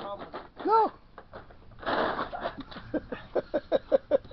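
A short whooping cheer about a second in, then laughter in quick bursts of 'ha' through the second half.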